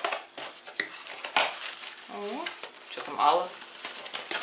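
Cardboard tea-bag box being handled and opened by hand: scuffs and clicks of the card, the loudest about a second and a half in.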